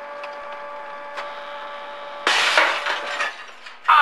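A steady hum, then about two seconds in a loud crack and shatter of glass lasting about a second: a photocopier's glass platen breaking under a man sitting on it. A short cry that falls in pitch comes at the very end.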